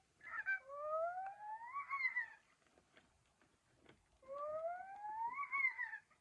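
Interactive animatronic baby monkey toy playing two electronic monkey calls, each a slowly rising whoop about two seconds long, the second starting about four seconds in, with faint clicks between them. The owner suspects its batteries are running low.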